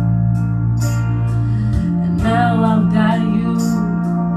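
A woman singing a held note with vibrato into a microphone over instrumental accompaniment with sustained low notes.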